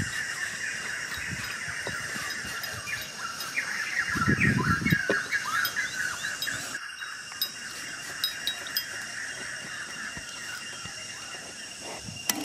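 Outdoor ambience of insects droning steadily, with rapid high chirping through the first half. A short rustle of hands in sandy soil comes about four seconds in.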